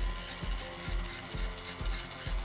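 Background music with a steady beat of about two pulses a second. Under it runs the mechanical whir of a Foredom flex-shaft rotary tool turning a small flat bristle brush slowly, at around 1,000 rpm, through carved grooves to clean them out.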